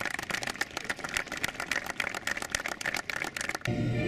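Applause from a small group of people, many separate hand claps close together. It cuts off abruptly near the end and music begins.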